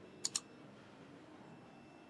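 A computer-mouse double-click sound effect, two sharp clicks in quick succession about a quarter second in, from an animated subscribe-button overlay as the cursor clicks Like; otherwise faint room tone.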